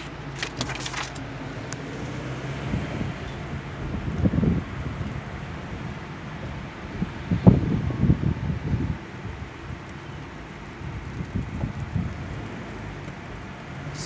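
Car cabin noise while driving slowly: a steady low engine and road hum, with paper crackling in the first second and a few louder low bumps, the loudest about halfway through.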